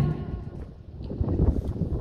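Wind rumbling on an outdoor microphone: a low, uneven rumble with no clear tone.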